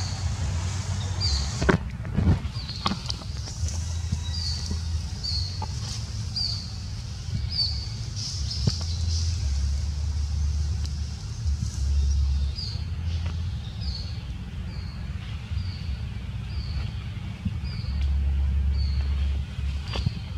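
A small bird repeating a short, high chirp about one and a half times a second, pausing for a few seconds midway, over a steady low rumble; a few sharp clicks about two seconds in.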